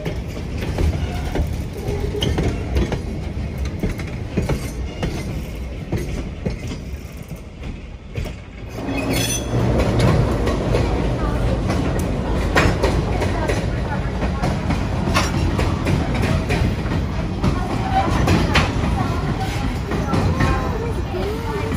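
Passenger train cars rolling past on the track: a steady low rumble with wheels clacking over the rail joints. After a brief drop about eight seconds in, the sound comes back louder, with many sharp clacks as the cars cross the bridge.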